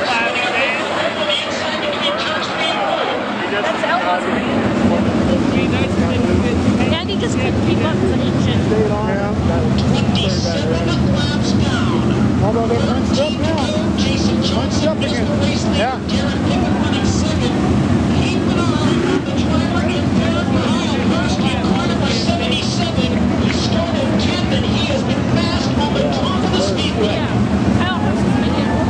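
A field of 410 sprint car V8 engines running steadily as the cars circulate the dirt track, the drone setting in about four seconds in, with grandstand crowd chatter over it.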